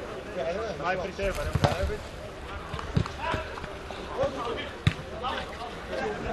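A football struck three times with sharp thuds over a few seconds during play on an artificial-turf pitch, among players' shouts.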